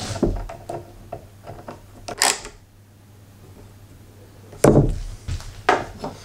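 Wood screws being driven by hand through plywood with a screwdriver: faint creaks and ticks, broken by a few sharp knocks of tools and screws handled on the wooden bench, one about two seconds in and two near the end.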